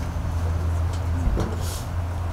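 A steady low hum from an idling motor, with a few faint clicks and a soft thump about one and a half seconds in.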